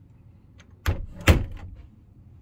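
Wooden bathroom door in a motorhome being shut: two sharp knocks about half a second apart, the second louder.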